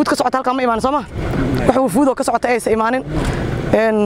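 Speech: a woman talking, with a low rumble beneath her voice.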